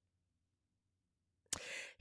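Near silence, then about a second and a half in a short, sharp in-breath close to the microphone, just before talking starts again.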